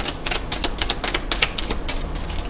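Tarot cards being shuffled by hand: a quick, uneven run of light card clicks and slaps, about five or six a second.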